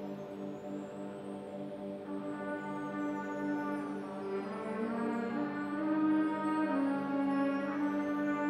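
School concert band playing a slow, ominous chant passage: long held brass and woodwind chords over a steady low drone. More instruments join about two seconds in, and the sound swells louder toward the middle.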